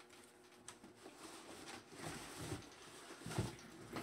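Cardboard shipping box being handled and pulled away from a boxed case: faint scraping and rustling of cardboard, with a light knock about three and a half seconds in.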